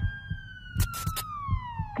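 Horror-trailer sound design: a single wailing, siren-like tone slides slowly down in pitch over a low beat that pulses about four times a second. A few sharp crackles of static come about a second in.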